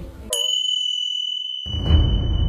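A single high, bell-like ding sound effect, struck about a third of a second in and ringing on as a steady tone. Low background music comes back in near the end.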